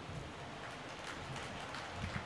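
A quiet pause: faint, even background noise of a hall, with no clear events.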